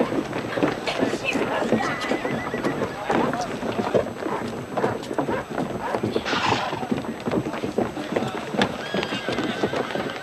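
Horses' hooves clopping on a street among a crowd of people, with voices underneath. A horse neighs once about six seconds in.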